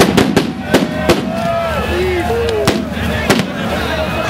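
Sharp bangs of tear-gas grenades over a field crowd: the loudest right at the start and about six in quick succession through the first second, then two more later. Voices shout and call throughout.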